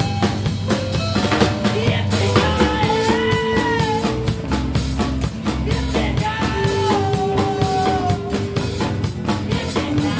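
A live band playing a rock number: a drum kit keeping a steady beat under guitar, with long held melody notes that bend slightly in pitch, twice across the passage.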